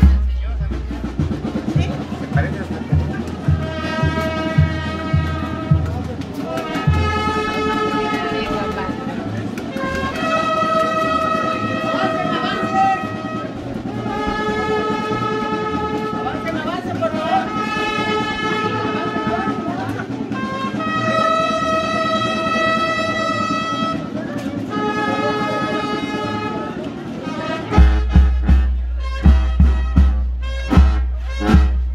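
Band music for a procession: a steady drumbeat for the first few seconds, then long held chords in phrases of about two seconds with short breaks between them, and the drumbeat comes back near the end.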